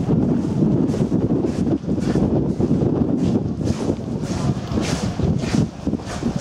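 Wind buffeting the camera microphone: a loud, gusting low rumble that rises and falls unevenly.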